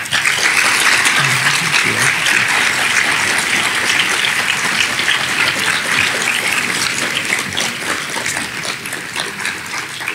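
Audience applauding, breaking out suddenly and continuing steadily, easing slightly toward the end.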